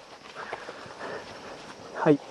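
Faint scuffing and rustling of people shifting on a muddy dirt slope beside a fallen dirt bike, a few soft scrapes about half a second in and again after the first second.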